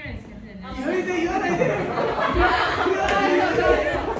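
Several people talking and calling out at once in overlapping chatter, louder from about a second in.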